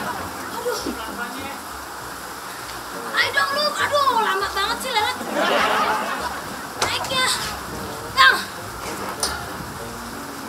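Short bursts of human voice, a few scattered exclamations without clear words, over a steady background hiss.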